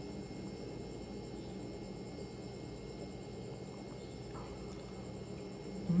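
Quiet steady room tone: a low, even hum with faint, steady high-pitched tones above it.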